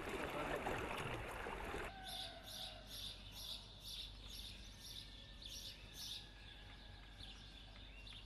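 A rushing noise that cuts off abruptly about two seconds in, followed by a bird chirping over and over: short high chirps about three a second, thinning out near the end.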